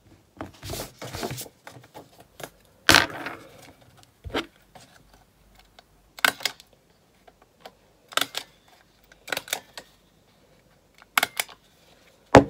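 Desk stapler clacking about six times, a second or two apart, as it is pressed and pulled open by hand, with paper rustling near the start.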